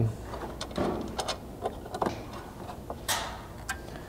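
Light metal clicks and a brief rustle from hands fitting a steel mounting bracket and its bolt, washer and flange-nut hardware. The clicks are scattered and irregular, with a short swish about three seconds in.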